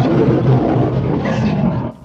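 Several lions growling over a carcass: a deep, continuous growl.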